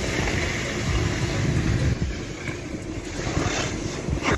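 Loud, steady rumbling roar at a large warehouse fire with fire engines at work, starting abruptly.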